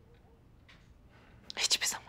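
Faint room tone, then about a second and a half in a short, breathy whisper from a woman.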